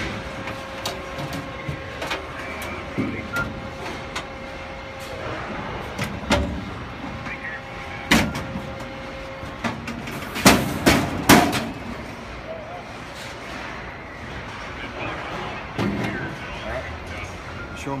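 Drawers of a steel Tennsco vertical file cabinet being pulled out on their metal suspension slides and lifted off, with scattered metal clanks and knocks. The loudest is a quick run of three clanks about ten to eleven seconds in. A steady hum runs under the first half.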